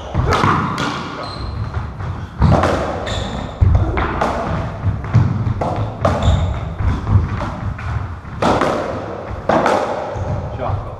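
Racketball rally: the rubber ball is struck by the rackets and smacks off the court walls and floor, giving a sharp impact about once a second. Each impact rings briefly in the enclosed court.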